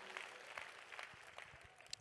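Faint applause from an audience in a hall, barely above the room's background hiss.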